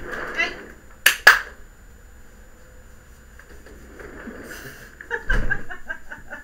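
Two sharp clicks in quick succession about a second in, like small hard objects knocking. Laughter and talk come at the start and again near the end.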